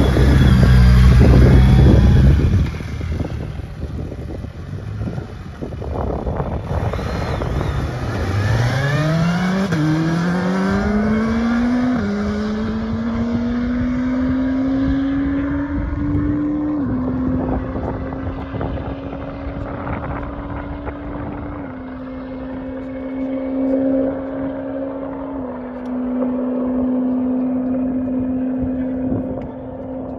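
Suzuki Hayabusa 1340 cc inline-four engine launching hard for a top speed run, very loud for the first couple of seconds, then accelerating away through the gears. Its pitch climbs and steps at each shift while the sound grows thinner and duller with distance.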